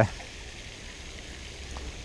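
Faint steady splashing hiss of the pond's spray fountain, with a low rumble under it and a single faint tick near the end.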